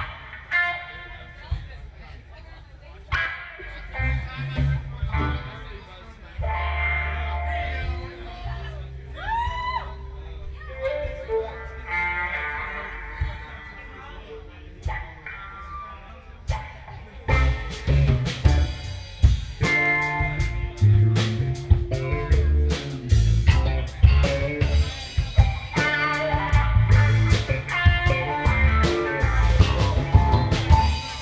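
Live funk-rock band playing an instrumental jam: electric guitars and bass guitar, with a bent guitar note about ten seconds in. A drum kit comes in with a busy beat a little past the middle, and the full band plays on together.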